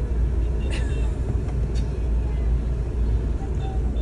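Steady low rumble of a car and street traffic heard from inside a taxi, with a few faint short sounds over it.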